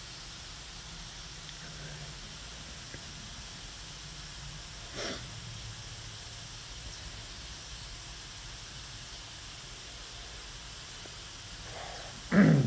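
A steady, faint hiss of background noise through a long pause, with one short, soft rush of noise about five seconds in.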